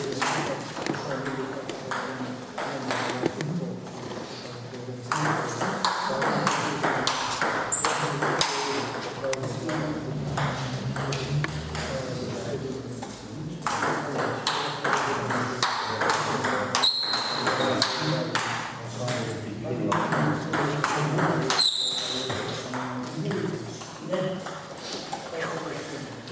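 Table tennis rally: the ball clicks off the paddles and bounces on the table again and again in an irregular stream of sharp ticks, with voices talking in the background.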